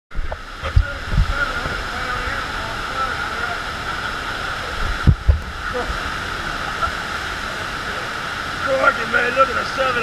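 Steady rush of a FlowRider surf machine's sheet wave: pumped water pouring up and over the ramp. A few low thumps come about one and five seconds in, and a man's voice starts near the end.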